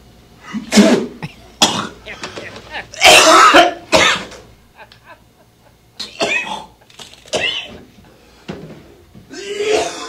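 A man coughing hard in repeated fits, with spluttering and throat clearing; the longest, loudest fit comes about three seconds in. His throat is burning from a big bite of ghost pepper.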